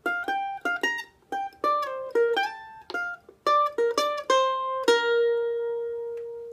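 F-style mandolin picking a quick single-note Gypsy-jazz lick in B-flat, with short slides between notes. The last note is left ringing and slowly fades from about five seconds in.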